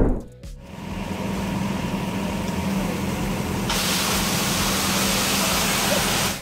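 A brief whoosh at the start, then water spraying under pressure from a broken buried water pipe: a steady hiss that turns brighter a little past halfway, over a low steady hum.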